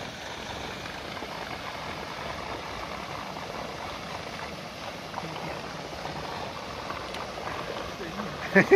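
Water gushing steadily from an inlet pipe into a fish pond, an even rushing splash.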